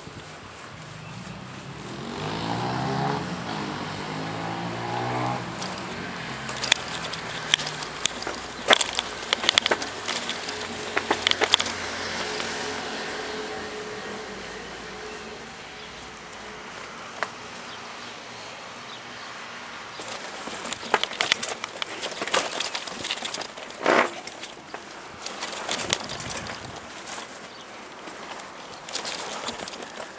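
Ragley Blue Pig mountain bike rattling and knocking as it is ridden over paving and up steps: sharp clatters in clusters, with a hum sliding up and down in pitch over the first several seconds.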